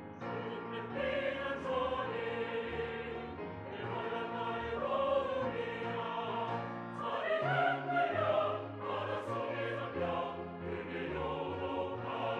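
Church choir singing a Korean-language anthem in sustained chords, over keyboard accompaniment with steady bass notes.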